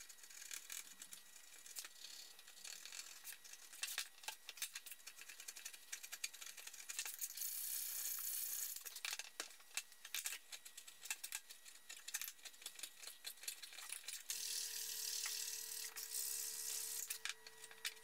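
Hand filing on walnut, heard as scraping strokes in stretches, mixed with frequent sharp clicks and knocks of wooden stool parts being handled and pushed together.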